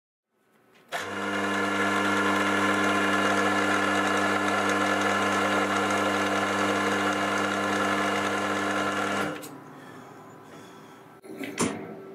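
Milling machine spindle motor starting about a second in and running with a steady hum while spot drilling a hole in a metal ring, then dropping away about nine seconds in.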